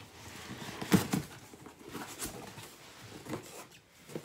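A cardboard shipping box being handled and opened by hand: a few irregular knocks and scrapes, the loudest about a second in.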